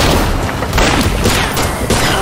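A burst of gunfire with heavy booms, dense and loud throughout, as a film-soundtrack shootout.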